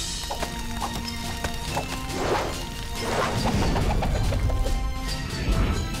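Cartoon action music with added sound effects: several quick whooshes and a run of crashing, whacking hits, with a deep rumble swelling in the second half.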